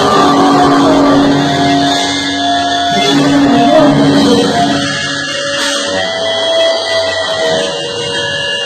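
Live rock band playing loud, with drums, electric guitar and bass guitar. About halfway through, the dense playing thins out, leaving long held guitar notes ringing.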